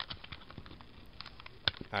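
Hands handling a bundle of cardboard coin holders tied with a rubber band beside plastic-wrapped coin tubes: light rustling and small clicks, with one sharper click near the end.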